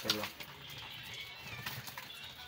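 Plastic bag rustling as a pile of fish is tipped out onto a plastic sheet, with light clicks and slaps. A cat mews faintly late on.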